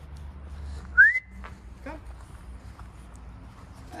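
A single short recall whistle to a dog about a second in: a quick upward slide that levels off into a brief held note.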